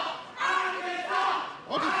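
Drawn-out shouts in a wrestling arena, heard over crowd noise. A long call lasting about a second comes in near the start, and a second one begins just before the end.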